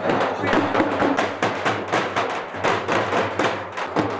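Drum-led music: drums beating a quick, even rhythm, several strokes a second.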